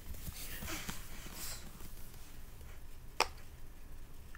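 Silicone crab-shaped pop-it fidget toy being pressed: a few faint, soft pops, then one sharp pop about three seconds in.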